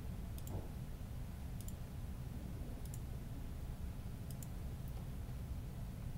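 Computer mouse clicking about five times, spaced a second or so apart, each a quick double click of press and release. The clicks place points around an outline being digitized. A low steady room hum runs underneath.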